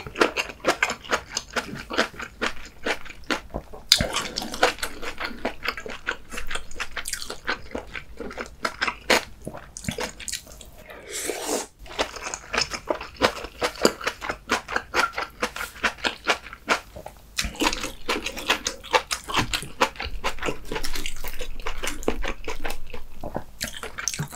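Close-miked eating of kimchi sausage stew with noodles: dense, wet chewing and clicking mouth sounds, with a short louder rushing sound between about eleven and twelve seconds in.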